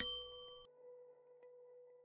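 A bright, bell-like ding sound effect for a subscribe button being clicked, ringing on a few clear pitches and fading away within about two-thirds of a second, over a faint steady low hum.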